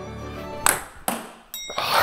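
A table tennis ball being hit back and forth in a quick rally: several sharp knocks of the ball on the rubber paddles and the table, about half a second apart, over background music.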